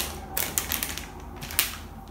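Plastic grocery packaging being handled, rustling and crinkling in a few short crackles as bags are set down and picked up.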